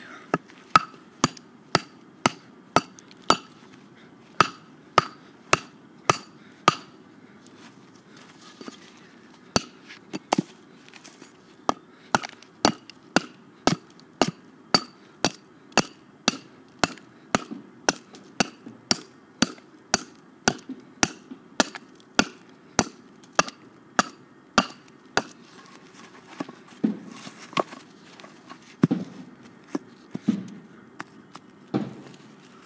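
Schrade SCHF1 fixed-blade knife chopping into a split stick of wood: sharp knocks about two a second, with a pause of about two seconds about a third of the way in, and fewer, uneven strikes near the end.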